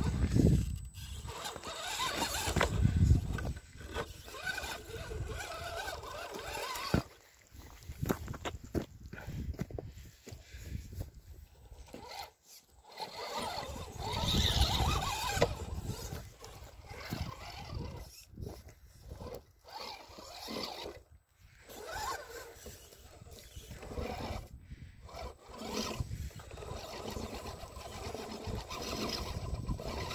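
Electric RC rock crawlers driving in stop-start bursts over loose rock, their motors and gears whirring, with tyres and chassis scraping and knocking on the stones.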